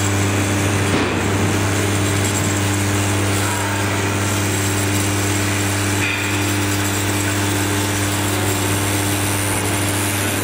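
Vibratory bowl feeder running: a loud, steady electromagnetic hum with a dense metallic rattle from the steel springs as they are shaken up the bowl's spiral track.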